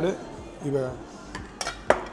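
Steel thali dishes clinking on a table as they are handled: three sharp clinks in the second half, the last the loudest.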